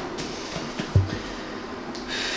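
Dull thud about a second in as the plates of a loaded barbell come down on a rubber floor mat during barbell hip thrusts, with a softer knock at the start.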